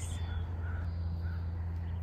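Two short, faint bird calls, about half a second apart near the middle, over a steady low hum.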